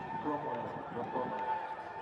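Indistinct shouting of football players and onlookers on the pitch, with a steady high tone running underneath.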